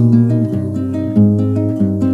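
Classical nylon-string guitar fingerpicked, notes of an arpeggiated chord ringing over one another, with a fresh plucked note a little past the middle.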